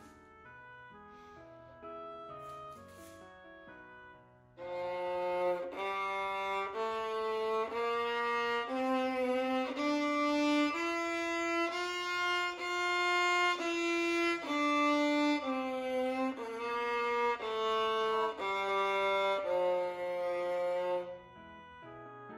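Viola bowed slowly through the F major scale, one sustained note about every second, stepping up in pitch and then back down. It starts about four and a half seconds in and stops just before the end.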